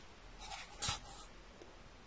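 Two faint, brief rustling scrapes of light handling, about half a second and just under a second in.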